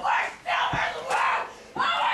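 Young voices yelling in repeated bursts, about two a second, like battle cries in a mock fight.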